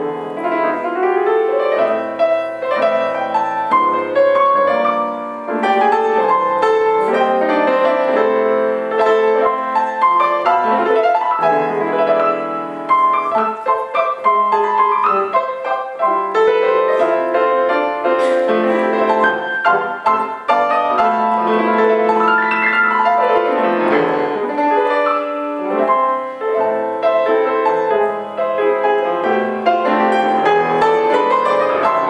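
Solo grand piano played in a jazz style, a continuous flow of chords and melody.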